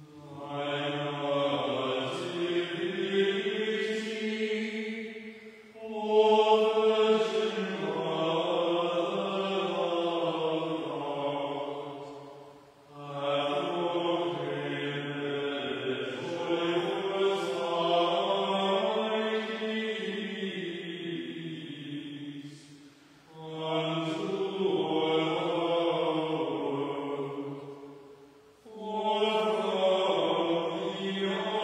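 A small group of voices chanting a liturgical text together, in long phrases of several seconds separated by short breath pauses, the pitch held mostly level with gentle rises and falls.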